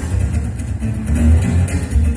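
Live amplified acoustic-electric guitar played through a PA, with a strong deep bass underneath.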